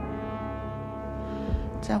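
Background film score: one long, steady held note with a horn-like tone.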